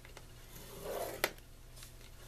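A scoring stylus drawn along the groove of a paper scoring board, pressing a fold line into very thick 110 lb cardstock. One scraping stroke comes about halfway through and ends in a sharp click, and another begins near the end.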